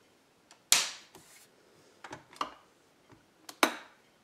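A series of sharp plastic clicks and knocks, about six, the loudest a little under a second in: a kettle's plug being pushed into a wall socket and the socket's rocker switch being flicked on.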